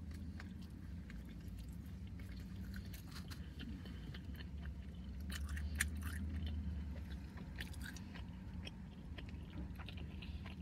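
Close-up chewing of a bite of hot dog in a soft bun, with many small wet mouth clicks. A low steady hum sits underneath and grows a little louder midway.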